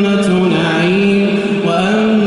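A man's voice chanting Quran recitation in the melodic tajwid style, drawing out long held notes that bend down and back up in pitch, with a rise into a new phrase near the end.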